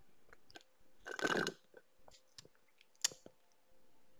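Mouth sounds of a person drinking through a straw: faint sips and small clicks, one louder half-second slurp about a second in, and a sharp click near the end.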